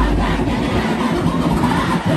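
The dancehall music cuts off right at the start, leaving a loud, steady rush of noise with no clear beat or tune for about two seconds before the music returns.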